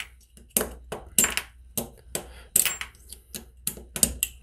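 Small brass contacts being pried out of a plastic motor contactor with a screwdriver and dropped onto the bench mat: a string of sharp clicks and light metallic clinks.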